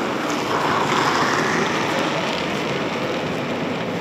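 Curling brooms sweeping the ice in front of a sliding stone: a steady rushing swish that swells about a second in.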